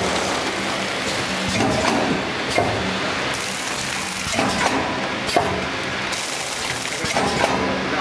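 Vertical packaging machine running: a steady mechanical hum under a cycle of clatter and knocks that comes round about every three seconds as the sealing jaws work and the printed film is pulled through.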